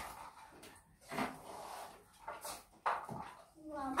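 Quiet room with a few brief, soft voice sounds and small scattered handling noises in between.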